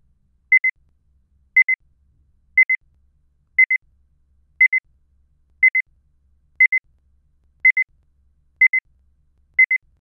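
Electronic double beep, like a digital alarm clock, repeating evenly once a second: ten pairs of short high beeps.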